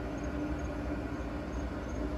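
Rec Teq 700 pellet grill running steadily, its fan giving a low hum with a faint steady tone. Faint high insect chirps repeat about three times a second.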